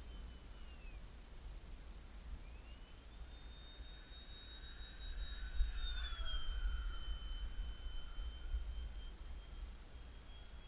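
ParkZone Habu foam RC jet's brushless electric ducted fan whining in flight. The whine fades away at first, comes back rising in pitch about two and a half seconds in, grows louder, then drops in pitch as the jet passes low about six seconds in. Wind buffets the microphone throughout.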